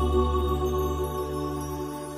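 Slow, calm new-age piano music: a chord held over a low bass, slowly fading away with no new note struck.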